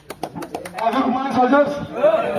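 A few sharp clicks, then several people talking at once in indistinct chatter.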